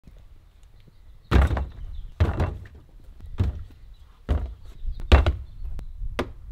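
Plastic jugs of liquid lawn products set down one by one on a plastic trash bin lid: five thunks about a second apart, then a lighter click near the end.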